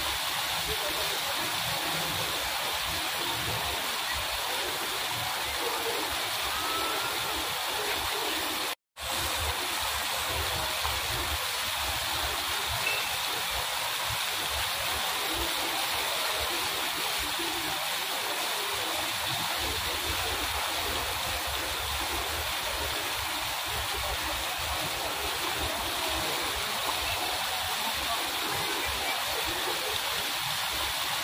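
Fountain water falling steadily onto a pool's surface, a continuous splashing rush, with a moment's dropout about nine seconds in.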